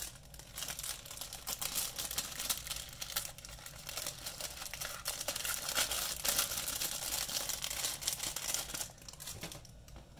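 Clear plastic bag wrapped around plastic model-kit sprues crinkling as it is handled: a dense run of crackles that eases off near the end.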